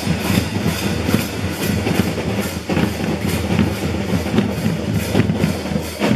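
Marching drum corps of snare drums and bass drums playing a fast, steady beat.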